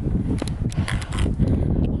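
Wind buffeting the microphone as an irregular low rumble, with a few sharp clicks over it.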